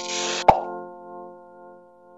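Logo intro sting: held synthesized chord tones with a short hissing swish, a sharp pop about half a second in, then the chord fading away.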